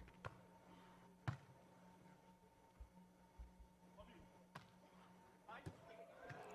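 Near silence: a faint steady hum, with a few faint, scattered ticks.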